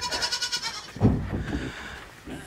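Goat bleating, loudest about a second in.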